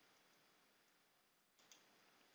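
Near silence, with one faint computer mouse click about one and a half seconds in.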